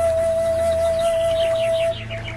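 Calm ambient music: a flute holds one long steady note over a low sustained drone, stopping just before the end. In the second half a quick run of high, falling chirps plays alongside it.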